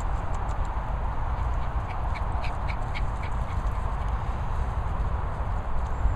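Steady low rumble of wind and handling noise on a hand-held microphone on the move. About two seconds in there is a quick run of five or six short high squeaks.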